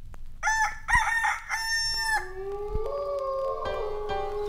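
A rooster crowing cock-a-doodle-doo: two short calls and a longer held one. Music with sustained notes starts just after it, about halfway through.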